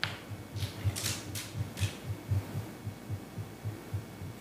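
A steady run of soft, low knocks, about four a second, with a few sharper clicks in the first second or two.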